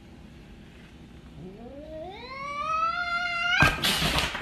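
A cat's long yowl, rising steadily in pitch over about two seconds, cut off near the end by a sudden loud, noisy burst.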